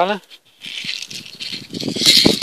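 Small beads rattling inside a white plastic tube shaken by hand, starting about half a second in as a dense run of small clicks.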